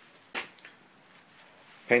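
Mostly quiet room tone with one short hissy burst about a third of a second in, then a man's voice starts near the end.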